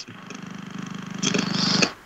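A man's drawn-out, creaky hesitation hum, a long "mmm" in thought. It grows louder towards the end and stops just before he speaks again.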